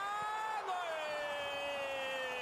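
Spanish football commentator's long drawn-out goal call: one sustained, shouted vowel that drops in pitch about half a second in and then sinks slowly as it is held.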